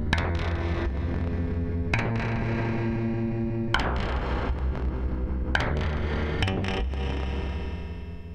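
Eurorack modular synthesizer playing a distorted, steady low drone rich in overtones, punctuated by sharp, bright percussive hits about every two seconds. The sound begins to fade near the end.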